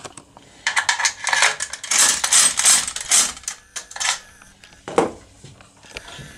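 Light metallic clinking and rattling, a quick run of clicks lasting a few seconds, then one sharp click about five seconds in: a metal lever-lock impression pick being handled and readied at the lock.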